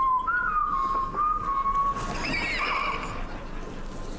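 Whistling: one thin wavering tone of about two seconds, followed by a short higher warble.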